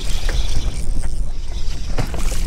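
Wind buffeting the microphone of a camera mounted on a bass boat, an uneven low rumble with a steady hiss of wind and water above it.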